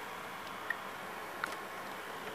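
Samsung VR5656 VCR's open tape mechanism running faintly, with two light mechanical ticks about three-quarters of a second apart as it threads the tape and goes into play.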